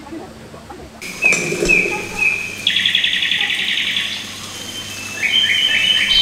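Songbird song: a few short high chirps, then a fast buzzy trill lasting about a second and a half, then more quick repeated notes near the end.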